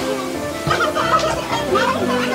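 Noisy party room: background music playing with several high, excited voices chattering and calling out over it.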